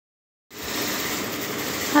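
Silent for half a second, then a steady, even hiss of background noise picked up by a phone's microphone, running until a voice begins right at the end.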